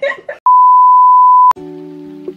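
A loud, steady, high-pitched bleep lasting about a second, a censor bleep laid over a word in the banter, cutting off abruptly with a click; light acoustic guitar music starts right after it.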